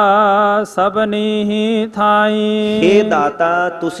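A man's voice singing a line of Gurbani in a slow devotional chant, holding long, wavering notes, with a short break under a second in and a sliding change of pitch near the end.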